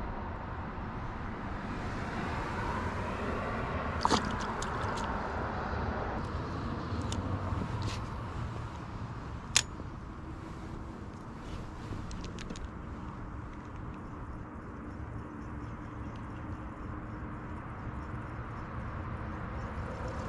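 Steady low background rumble on the microphone, with a few light clicks and one sharp click about halfway through.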